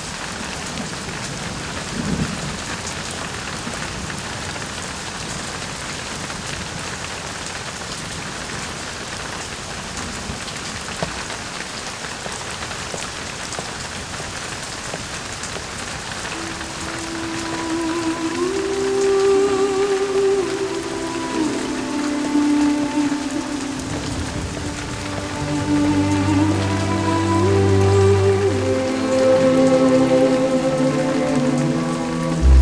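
Steady rain falling. Slow music with long held notes comes in about halfway through and grows louder toward the end.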